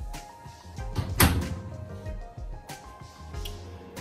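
Oven door pushed shut, closing with a single clunk about a second in, over background music.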